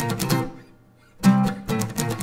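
Acoustic guitar strummed down and up on a C chord. The strums die away to a short lull about halfway through, then a strong downstroke starts the pattern again.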